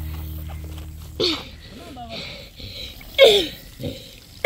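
Children's voices calling out in short bursts, with a louder shout falling in pitch a little after three seconds in. Someone clears their throat near the end.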